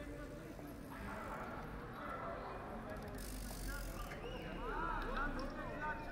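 Busy city street ambience: passers-by talking indistinctly over a steady low traffic hum, with a brief hiss about three seconds in.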